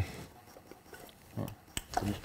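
Quiet engine bay, then about one and a half seconds in a man's short grunt and two sharp clicks as the engine's ignition spark is checked by hand. The grunt is him taking a jolt from the spark.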